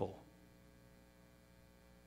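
Faint, steady electrical mains hum in the recording, a low buzz of evenly spaced tones, after a man's word trails off at the very start.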